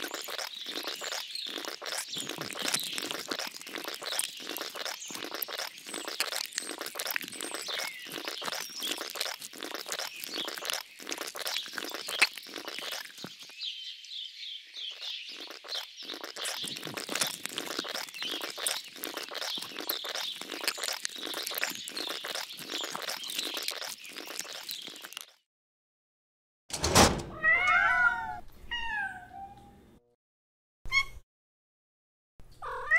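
Birdsong with a steady, quick crackling, about two to three crackles a second, that cuts off suddenly. A second or so later a cat meows loudly a few times, each meow bending in pitch.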